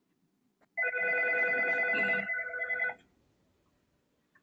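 A single electronic ringing tone, a steady warbling ring of about two seconds starting about a second in and cutting off sharply.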